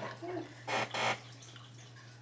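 A man's breath and mouth sounds in a pause between phrases: a faint murmur, then a soft breath a little under a second in, over a low steady hum.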